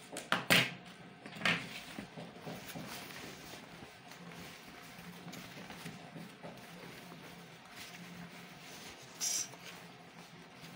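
Fabric being handled and folded on a table: a few sharp knocks and rustles in the first second and a half, quieter handling noise after that, and a brief hissing rustle about nine seconds in.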